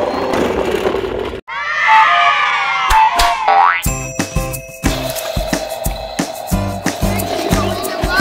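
Edited-in cartoon sound effects: a sweeping whoosh with two short two-note beeps and a quick rising boing. About four seconds in, upbeat children's music with a steady drum beat starts.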